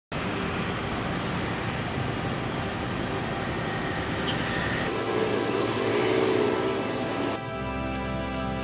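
City street traffic noise, a steady rush of passing vehicles, with a wavering tone swelling a little after five seconds. It cuts off suddenly about seven seconds in, and soft music with sustained notes takes over.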